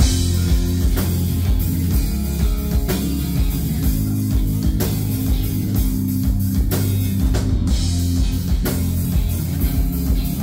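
Live rock band playing loud and heavy: a distorted guitar and bass riff over a drum kit with repeated cymbal crashes, the full band crashing in right at the start.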